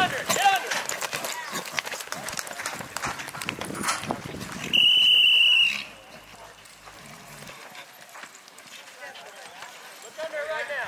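Voices shouting over hoofbeats in a rodeo arena. Just before five seconds in comes a loud, high, steady tone lasting about a second, followed by quieter hoofbeats of horses running on dirt.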